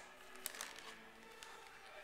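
Faint crinkling with a few light clicks from gift packaging and wrapping paper being handled; otherwise quiet.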